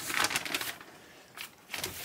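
Paper rustling and crinkling as an old magazine is handled, loudest in the first half second, with softer rustles near the end.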